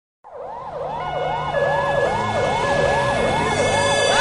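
An emergency siren wailing in fast, even rise-and-fall sweeps, about two and a half a second. It fades in quickly at the start.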